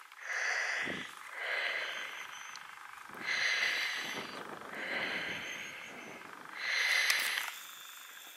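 A person breathing close to the microphone: five noisy breaths, a second or two apart.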